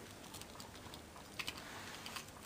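Faint small clicks and light rustling of something being handled, with two sharper clicks about a second and a half in.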